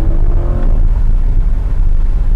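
Chevrolet Corvette C8 Z51's mid-mounted 6.2-litre V8 and performance exhaust pulling under acceleration, heard from inside the open-top cabin. The engine note rises for the first moment, then settles into a steady low drone with wind rush.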